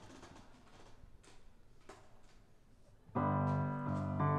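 Faint room noise with a few soft clicks for about three seconds, then a grand piano comes in with a loud, held chord, the opening of a song.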